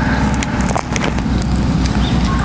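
A steady low rumble with crackle, with a few sharp clicks as a long knife is pressed into the seam of a durian's spiky husk.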